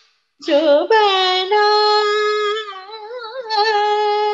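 A woman's voice singing a Hindustani classical phrase in raag Yaman, unaccompanied. The phrase begins after a brief pause and holds long steady notes joined by slow, wavering glides.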